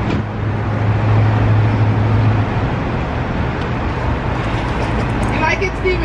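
Outdoor road-traffic noise with the steady low hum of an idling vehicle engine, loudest for the first two seconds or so and then fading back into the general rumble; a voice comes in near the end.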